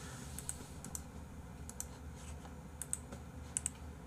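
Faint, irregular clicking of computer keys, about a dozen clicks, over a low steady hum of room tone.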